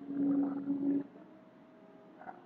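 A man's drawn-out hesitation sound, a held "uhh" about a second long, followed by faint room tone with a low steady hum.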